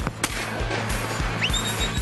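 A single shotgun shot about a quarter of a second in, over music with a steady drum beat. Near the end a high tone glides up and then holds.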